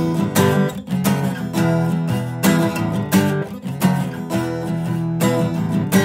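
Acoustic guitar strummed in a steady rhythm of full chords, about two strokes a second, the notes ringing between strokes.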